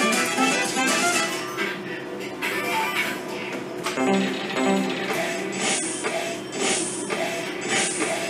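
Merkur slot machine playing its game music. From a little past halfway, a short rushing burst comes about once a second as the machine plays off its action games one after another.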